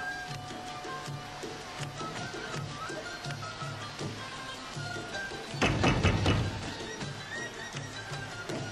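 Background music with a steady rhythmic beat and a melody over it. About five and a half seconds in, a loud, rough burst of noise cuts across it for about a second.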